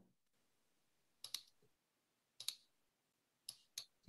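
A few faint, sharp computer clicks at irregular intervals, some in quick pairs, from a mouse and keyboard being used to edit a spreadsheet.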